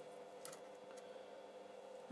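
Near silence: faint steady room hum, with a couple of faint clicks about half a second in from a small piece of aluminium sheet being handled.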